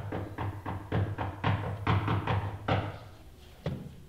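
Knocking on a wooden pulpit, a quick even series of about four knocks a second that stops near the end, followed by one last knock.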